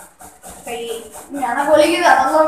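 A woman's voice speaking, quiet at first and loudest near the end.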